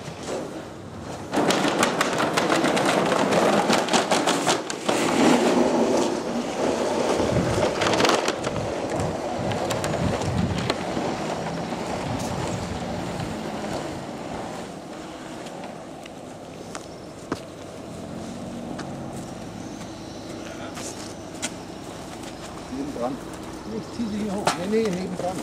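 A heavy rope net loaded with paintings dragged over paving, a rough scraping that starts about a second in, is loudest for the next several seconds and then eases off.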